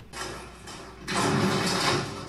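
Soundtrack of the TV drama episode playing: a loud, even rushing noise that starts about a second in as the episode cuts to a new scene.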